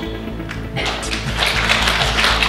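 Audience applauding, building up about a second in, over background music with a steady beat.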